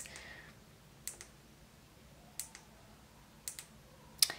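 Plastic push buttons on a rainbow sunset projector lamp's controller being pressed to change the light colour: three faint double clicks about a second apart.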